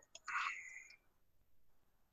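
A faint, breathy whisper-like sound from a person's voice about half a second in, then near silence.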